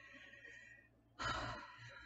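A woman's soft breathy sigh, followed about a second in by a louder breath in before she speaks again.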